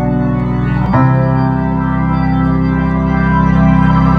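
Live band music through a concert PA, recorded from the crowd: sustained organ-like keyboard chords held steady, shifting to a new chord about a second in.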